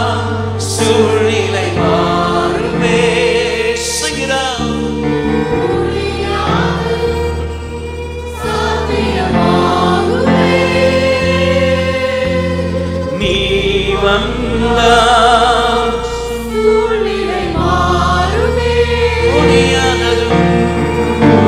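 Live gospel worship music: a male lead singer with backing singers over a band, with sustained bass notes that change every second or two.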